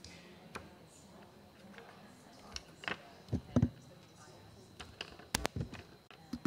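Clicks and knocks of laptops and cables being handled and plugged in on a table, loudest a little past halfway and again near the end, with quiet talk in the room.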